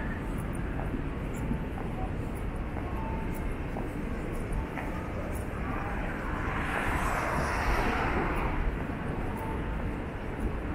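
City street ambience: a steady low rumble of traffic with faint distant voices. A passing vehicle swells louder from about six seconds in and fades again near the end.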